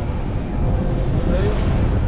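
Minibus engine and road noise, a steady low rumble heard from inside the moving vehicle through an open side window.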